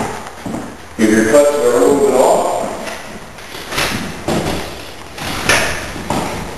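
A man's voice briefly, then a few separate knocks and thumps.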